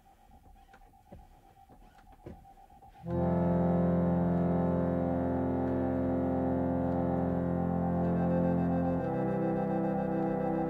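Song intro: after a quiet start with faint scattered clicks, a sustained keyboard-like chord enters abruptly about three seconds in. It holds steady and moves to a new chord near the end.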